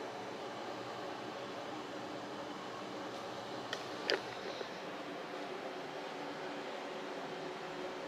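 Room air conditioner running with a steady hiss and faint hum. A few faint clicks come about three to four seconds in.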